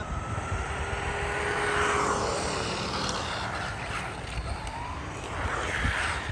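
Two RC cars, a Mattel Cybertruck and a General Lee, racing on asphalt. Their motor whine and tyre noise swell to a peak about two seconds in, fade, then build again near the end as the cars come close, over a low rumble.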